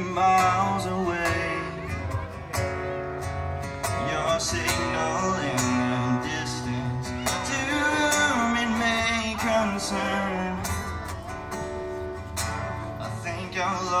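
Live acoustic guitar strummed over a steady box-drum (cajon) beat, an instrumental intro; singing comes in near the end.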